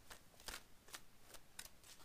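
A deck of oracle cards shuffled by hand, faintly: a run of soft, irregular card flicks.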